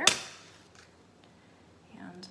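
A match struck on a matchbox: one sharp strike right at the start that flares into a brief hiss and dies away within about half a second.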